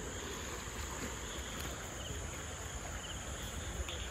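Night outdoor ambience: crickets trilling steadily at a high pitch over a low, even rumble of wind on the microphone.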